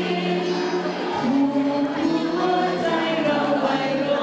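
Music: a song sung by a group of voices in held notes, moving from note to note every second or so.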